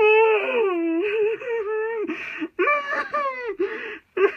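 A person's high, strained puppet voice wailing and moaning without words: a long wail that slides down in pitch at the start, then after a short break about two and a half seconds in, another falling wail.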